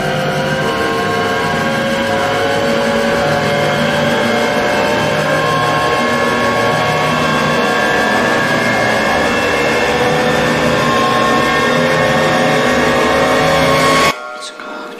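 Cinematic trailer riser sound effect: a dense build-up of layered tones that slowly climb in pitch while the whole sound grows gradually louder, peaking at the very end.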